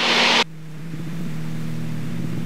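Extra 300L's Lycoming six-cylinder engine and propeller droning steadily at reduced power, heard from inside the cockpit. A brief burst of loud hiss cuts off suddenly about half a second in, after which the drone swells a little and holds.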